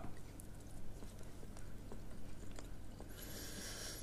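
Chewing a mouthful of raw blue runner sashimi: faint, irregular small mouth clicks, with a brief hiss near the end.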